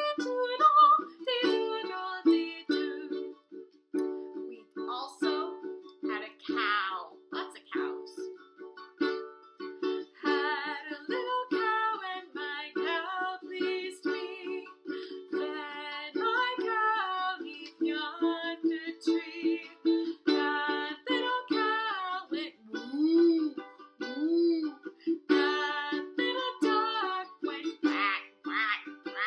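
Makala ukulele strummed in a steady, even rhythm, with a woman's voice singing over it at intervals.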